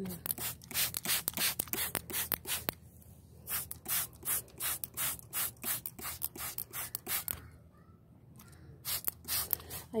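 Hand trigger spray bottle squeezed rapidly, a quick run of short hissing sprays, several a second. The sprays come in two runs, stop about seven seconds in, and start again near the end.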